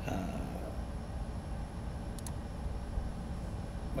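Steady low background rumble, with one faint short click about two seconds in.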